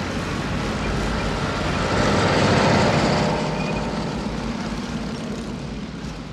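A convoy of heavy vehicles, including a loader tractor and a lifted pickup truck, driving past with engines running. The noise swells to its loudest about two and a half seconds in, then gradually fades.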